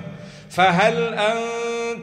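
A man chanting a Qur'anic verse in Arabic in melodic recitation. His voice comes in about half a second in and holds long, drawn-out notes.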